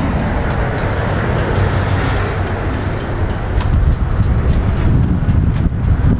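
Carbureted Harley-Davidson Twin Cam 88 V-twin idling steadily.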